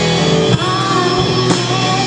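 Live rock band playing: electric guitar, keyboard and drum kit, with drum hits about half a second and a second and a half in and a curving melody line over held notes.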